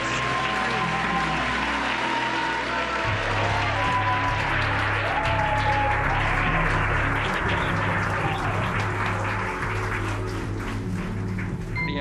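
A crowd applauding, with background music underneath; the applause thins out near the end.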